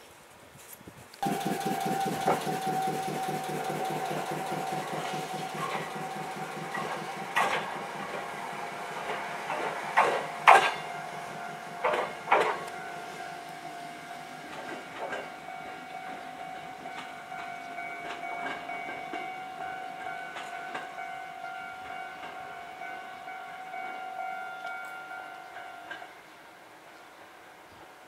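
Choshi Electric Railway 2000-series electric railcar (car 2001) pulling away from the platform: motor and running noise starts suddenly about a second in. Several sharp clacks of wheels over rail joints follow between about seven and twelve seconds in, and the sound fades as the train draws away, with a steady high tone running under it.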